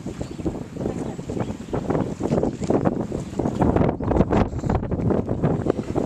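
Wind buffeting the camera's microphone: a loud, gusty rumble that rises and falls.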